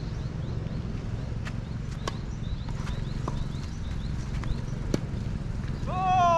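Steady low wind rumble on the microphone, with short rising chirps repeating about twice a second, typical of a small bird calling. A few sharp taps fall a second or more apart.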